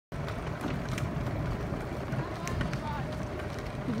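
Steady low rumble of a small open vehicle driving slowly on a gravel road, tyres crunching, with wind on the microphone. A voice says "thank" at the very end.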